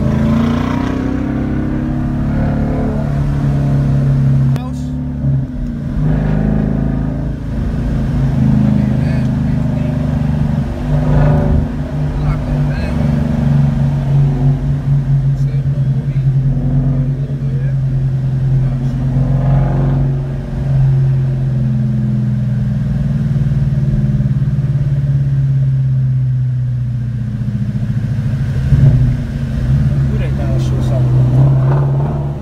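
Coyote V8 of a 2016 six-speed Ford Mustang, heard from inside the cabin while driving. It drones steadily at moderate revs and rises and falls in pitch a few times as it pulls and shifts.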